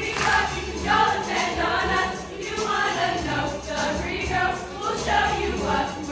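A group of women singing together over backing music with a strong bass line.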